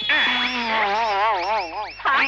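A man bleating like a goat: one long, quavering call held for over a second.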